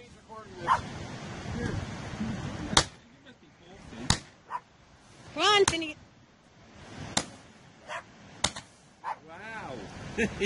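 Fireworks going off: a string of sharp bangs spaced one to two seconds apart. Short yelping calls come twice, about halfway and near the end.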